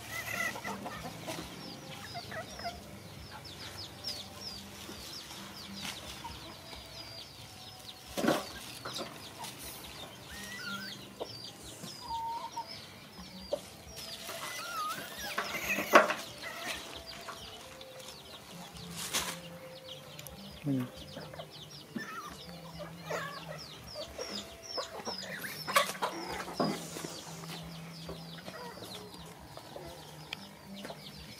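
Chickens clucking in the background with many short, thin chirps, and a few sharp knocks on a metal tabletop as young monkeys scramble over it, the loudest knock about halfway through.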